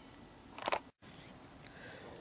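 Faint outdoor background ambience, broken a little over half a second in by a short breathy burst of noise, then a split-second dead silence where the recording cuts to a new shot.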